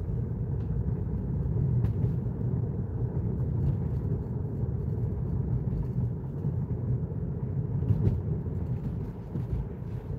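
Steady low rumble of tyre and road noise inside a moving car's cabin, at about 38 to 39 mph.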